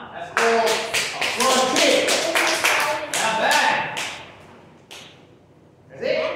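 Children's voices over a quick, uneven run of hand claps, about three a second, which fades out after about four seconds.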